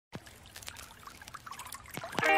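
Faint trickling water, a small stream babbling with many tiny irregular splashes, growing a little louder.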